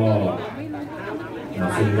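Speech only: a man announcing in Thai.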